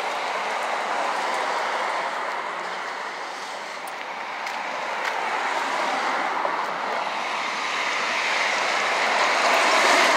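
Street traffic noise: passing cars swelling and fading, with a few faint clicks.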